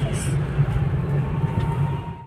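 Car interior while driving: a steady low engine and road drone heard from inside the cabin.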